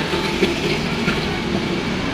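Steady low background rumble with hiss, unbroken and with no distinct event.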